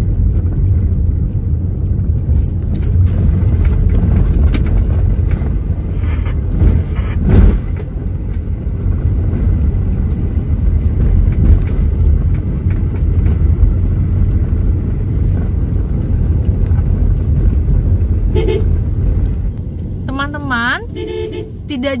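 Steady low rumble of road and engine noise heard from inside the cabin of an old Nissan car driving along, with a single thump about seven seconds in.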